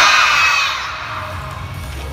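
A group of children shouting together in one loud cheer, with many high voices overlapping; it fades away over about a second into a lower crowd hubbub.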